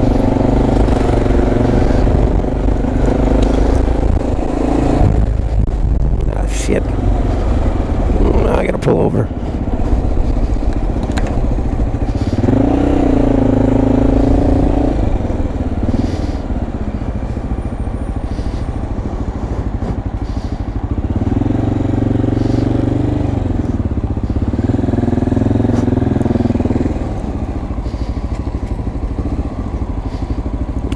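Honda motorcycle engine running under way, its pitch rising and falling as it is throttled up and eased off a few times in traffic.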